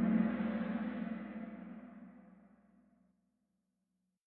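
Kahoot quiz game's answer-reveal sound effect: a single gong-like stroke that rings and dies away over about three seconds, marking the end of the question and the showing of the correct answer.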